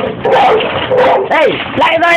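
Pit bulls barking several times in quick succession, with a falling, whining cry about one and a half seconds in.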